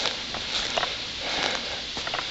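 Footsteps rustling through dry fallen leaves on a forest floor as someone walks.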